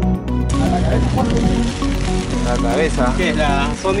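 Background music, then about half a second in a steady rush of wind noise on the microphone of a mountain bike rider cuts in, with the music still faint underneath. Voices call out near the end.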